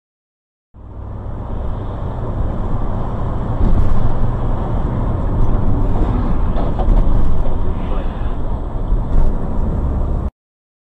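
Car driving noise: a loud, steady low rumble of engine and road, with a few faint clicks. It starts abruptly about a second in.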